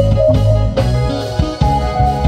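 Live band music: a drum kit beat under a low bass line, with held higher notes from a melodic instrument.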